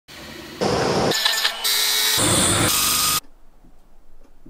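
A quick succession of workshop power-tool noises that change abruptly about every half second, after a quieter machine sound at the start. They cut off suddenly just after three seconds.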